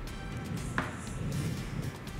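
Soft background music with steady held notes, and one light knock about a second in.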